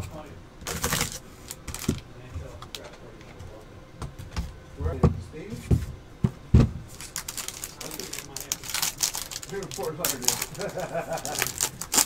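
Cardboard trading-card box knocked and set down on a desk several times, then a foil-wrapped card pack crinkling as it is pulled out and handled.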